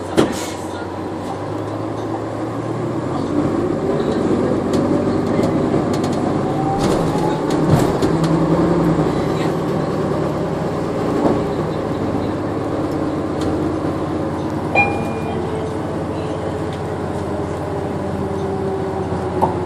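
Cabin sound of a 2014 NovaBus LFS hybrid bus under way, its Cummins ISL9 diesel and Allison EP 40 hybrid drive running. A rising whine comes in about three to seven seconds in as the bus picks up speed, then it settles into a steadier run.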